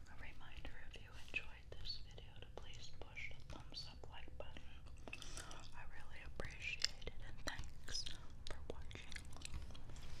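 Soft whispering close to a 3Dio binaural microphone, broken by many short wet clicks and smacks of chewing grape bubble gum.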